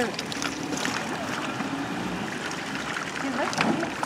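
Small outboard motor on a jon boat running steadily, with water noise around the hull.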